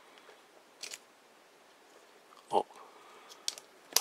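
Plastic parts of a Transformers Titans Return Shockwave figure clicking as they are folded by hand during its transformation. There are a few short, sharp clicks: a double click about a second in, a louder short sound a little past halfway, and two clicks near the end.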